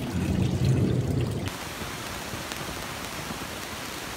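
Water splashing into an IBC aquaponics fish tank, a steady rushing hiss, with a low rumble over the first second and a half.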